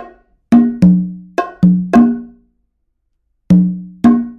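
Congas and bongo struck by hand, a samba pattern played slowly note by note: about six ringing open-tone strokes in the first two seconds at two different pitches, a pause, then another stroke near the end.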